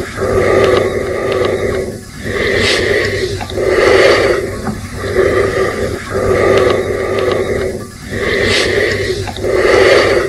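Loud, raspy heavy breathing: slow breaths drawn in and let out in turn, each lasting about a second, with short pauses between them.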